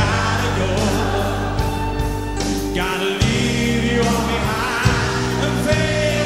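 Male lead singer singing a slow rock ballad verse live, backed by a full rock band with bass and drums.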